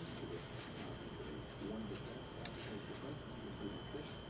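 Faint steady room hum with a thin high whine, light handling of a soap bar and one sharp click a little past halfway. A faint wavering murmur sits underneath.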